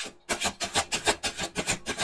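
A deck of tarot cards being shuffled by hand, the cards rubbing and slapping together in quick, even strokes, about ten a second, starting a moment in.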